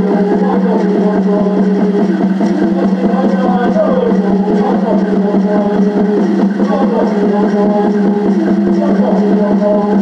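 Native American Church peyote song: a man's voice singing in gliding phrases over a rapidly and evenly beaten water drum, which keeps up a steady low ringing tone, with a gourd rattle shaken along with it.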